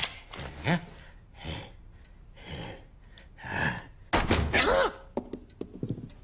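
Cartoon soundtrack: short breathy vocal noises from a character, then a heavy thunk about four seconds in, followed by a few quick knocks.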